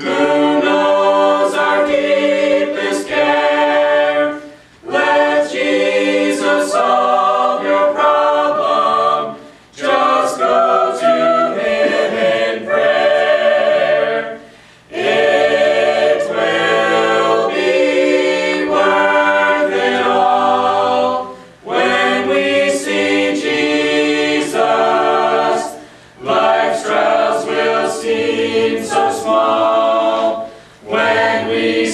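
A mixed eight-voice a cappella ensemble of men and women singing a gospel hymn in harmony, with no instruments. The singing comes in phrases with brief breath pauses between them, about every five seconds.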